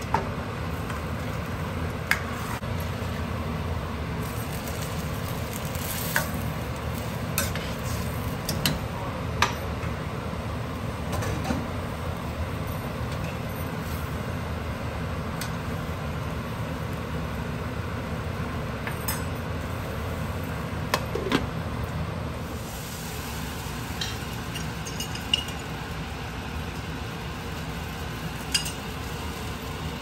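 Metal ladle and spoon scraping and clinking against a stainless-steel pan as cooked chickpeas are poured into the curry and stirred, with about a dozen sharp clinks scattered through. Under it runs a steady low rumble.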